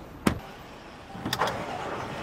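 Car sounds: a car door shuts sharply about a quarter second in, a second clunk follows about a second later, and then a steady engine hum sets in.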